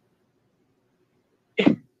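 A short vocal burst about one and a half seconds in, a quarter-second outburst falling in pitch. Before it, only faint background hiss.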